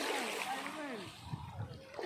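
Shallow water splashing and washing over a pebble shoreline, with people's voices in the background during the first second.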